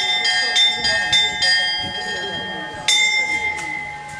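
A small chapel bell is rung in quick strokes, about three a second, for the first second and a half. It is then left ringing on, and struck once more about three seconds in.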